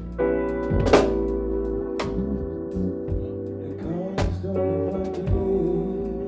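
Live band playing: held chords over a drum kit, with sharp drum and cymbal hits about a second in, about two seconds in and again after four seconds.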